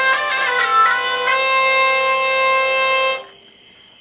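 Aquitaine hurdy-gurdy, its wheel cranked against the strings: steady drone strings under the melody strings, which play a few shifting notes in the first second and then hold a note. The melody strings are back at their regular G with the capo released. The sound stops abruptly about three seconds in.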